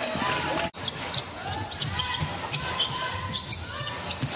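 Basketball dribbled on a hardwood court, with short bounces and players' voices echoing in a large, nearly empty arena. The sound cuts out briefly under a second in.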